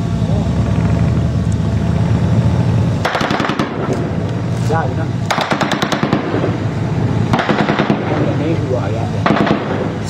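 Bursts of automatic gunfire, about four bursts of a second or so each beginning about three seconds in, each a rapid string of sharp cracks. Before the first burst a steady low drone runs, and it drops away when the firing starts.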